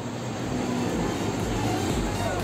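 Steady background noise of a restaurant room, an even hiss with a faint low hum, moderately loud.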